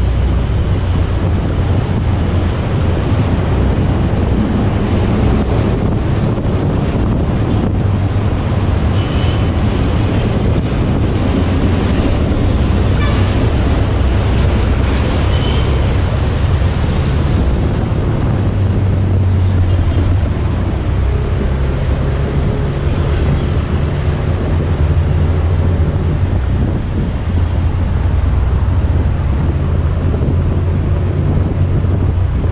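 Steady wind buffeting a moving camera's microphone, over the constant low rumble of car traffic on a busy city avenue.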